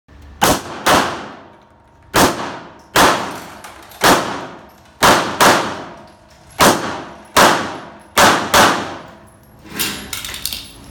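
Semi-automatic pistol fired eleven times, some shots in quick pairs, each report followed by a long echo off the walls of an enclosed indoor range. A softer knock follows near the end.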